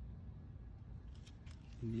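Faint low background noise with a few faint clicks in the middle, then a man begins to speak near the end.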